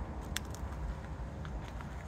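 Quiet outdoor background: a low steady rumble with a few faint clicks.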